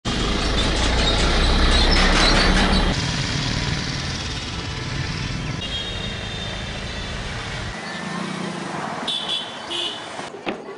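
Road traffic ambience with engine rumble, loudest in the first three seconds as a vehicle passes, then a steadier, quieter street hum. Brief high-pitched tones, like horn beeps, sound twice near the end.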